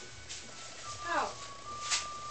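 A short spoken "oh" about a second in, over faint steady held tones.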